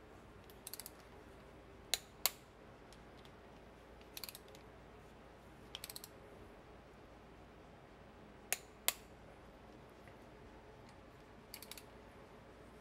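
Click-type torque wrench tightening intake manifold bolts on a small-block V8: short bursts of quiet ratchet clicking as the handle is swung back, and two pairs of sharp, louder clicks, about two seconds in and again past eight seconds, as the wrench breaks over at its torque setting.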